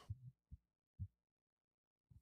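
Near silence broken by a few faint, short low thuds: a man's stifled, closed-mouth burp.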